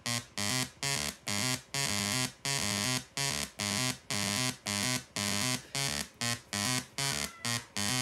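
Homemade breadboard step-sequencer synth driven by a CD4017 counter, playing a looping sequence of short, harsh buzzy notes about three a second, the pitch stepping from note to note. Some notes are cut short and the pattern jumps back to its start as the newly wired reset button is pressed.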